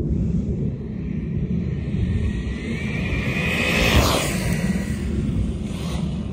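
Arrma Talion XL 6S RC car on a speed pass, its brushless motor whining higher and louder as it approaches, passing close with a rush of noise about four seconds in, then fading away. Wind rumbles on the microphone throughout.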